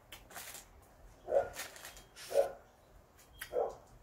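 A dog barking: three short barks about a second apart.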